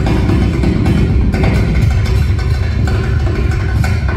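Amplified acoustic guitar played solo fingerstyle through a PA, with percussive hits on the guitar keeping a beat of about two to three a second under the melody.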